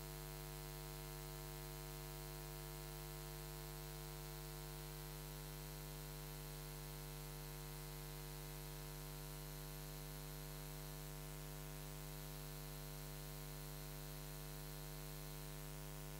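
Faint, steady electrical mains hum, one low tone with a row of higher overtones above it, unchanging throughout; no music is heard.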